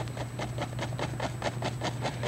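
Fan brush loaded with thick dark oil paint tapping downward against a stretched canvas, a quick, even run of taps at about seven a second, laying in distant evergreen trees.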